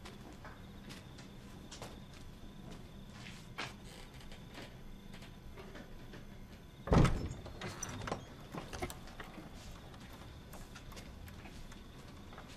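A door being unlatched and pulled open: one heavy clunk about seven seconds in, then a few smaller rattles of the door and latch, over a low steady room hum with faint clicks.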